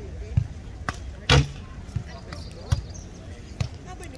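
Volleyball being struck by bare hands and forearms in a passing drill: a series of sharp slaps, about six, the loudest a little over a second in.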